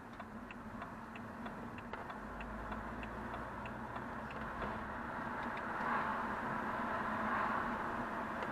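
Car's turn indicator ticking inside the cabin, about three ticks a second, over steady engine and tyre noise. The road noise grows louder in the second half.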